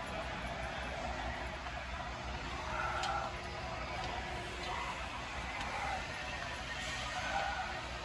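Faint background music over the steady room noise of a large indoor hall.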